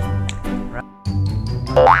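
Cheerful background music for children with steady held notes and light percussive ticks. It dips briefly about a second in, and near the end a quick rising sliding tone sweeps up as a transition effect.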